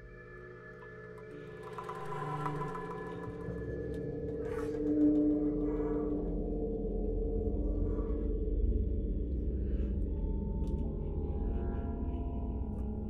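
Contemporary chamber music for alto flute, tenor saxophone, double bass and electronics: slowly shifting sustained tones over a low drone, growing louder through the first few seconds. Breathy, airy flute sounds swell about two seconds in and again around four to five seconds.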